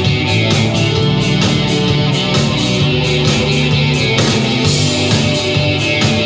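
Live rock band playing: electric guitar, bass guitar and drum kit, with a steady cymbal beat about four strokes a second.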